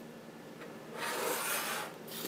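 A brief rustling, rubbing handling noise starting about a second in and lasting just under a second, as the starch-soaked crocheted piece in its plastic-bag wrapping is lifted and moved.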